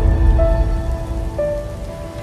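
Logo-intro music: sustained synth tones that step to a new pitch about half a second in and again near one and a half seconds, over a deep rumble and a soft noisy hiss.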